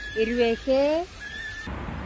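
A woman's voice saying one short word in two pitched syllables, the second rising and falling, in the first second; otherwise only faint background hum.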